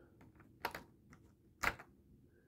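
A few light clicks and taps of plastic parts being handled on a Mafex Peter B. Parker action figure, with two louder clicks about a second apart.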